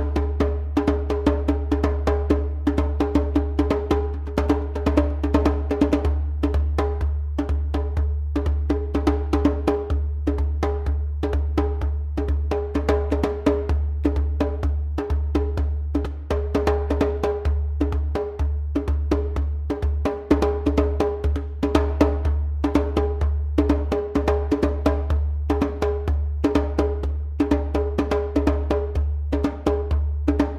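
Djembe played with bare hands in a fast, unbroken rhythm of many strokes a second.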